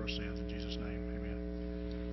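Steady electrical mains hum, several fixed tones, with a man's faint speech at the microphone trailing off in the first second.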